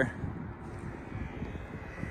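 Quiet outdoor background: a low, steady rumble with a faint thin high tone near the end.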